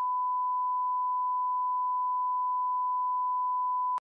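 Television test-card tone: one pure, steady beep held at a single pitch without a break.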